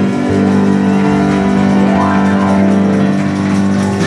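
Live gospel band music: electric guitar and band playing a slow song, with chords and notes held steadily.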